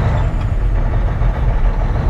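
The Cummins ISX diesel engine of a Volvo 780 semi truck running at low speed, heard from inside the cab as the truck creeps across a lot. It is a steady, low-pitched sound.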